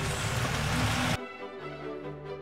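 Spaghetti and clams sizzling in a frying pan. About a second in, the sizzle cuts off suddenly and background music with sustained notes takes over.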